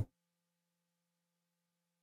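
Near silence: only a faint steady low hum in the recording.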